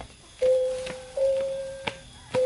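Background music: a simple melody of long held notes, the first coming in about half a second in and stepping up slightly a little later, with a sharp tick near the end.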